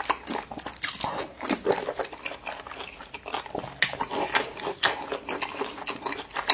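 A person chewing a full mouthful of food close to the microphone: an irregular run of smacking and clicking mouth sounds, several a second, the sharpest about two thirds of the way through.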